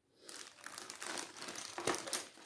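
Plastic bags of 3D puzzle pieces crinkling as a hand rummages through them, starting a moment in, with a sharper crackle near the end.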